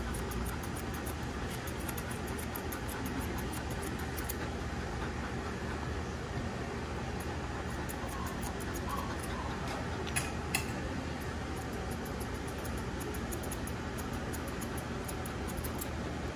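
Grooming shears snipping repeatedly through a dog's head and beard hair, small quick ticks in runs, over a steady background hum. Two sharper clicks come close together about ten seconds in.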